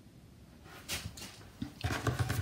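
Light taps and scrapes of hands reaching for and picking up a deck of Clow cards from a tabletop: a few short clicks about a second in and again near the end, after a near-silent start.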